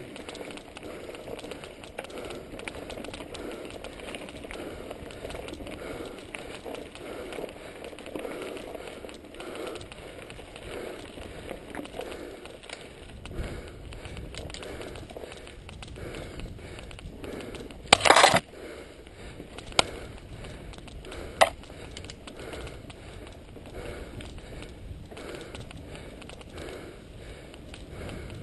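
Mountain bikes rolling over a rough dirt and gravel track, tyres crunching and the bike rattling over bumps. A loud clatter about two-thirds of the way through, then two sharp clicks a few seconds later.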